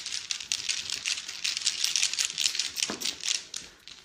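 A paper slip crinkling and rustling between fingers: a quick, irregular run of small crackles, with one soft knock about three seconds in.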